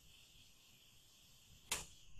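Near silence: faint steady hiss of a webinar's audio line, broken near the end by one short, sharp noise.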